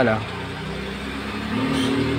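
A motor vehicle engine running at a steady low pitch, getting a little louder in the second half.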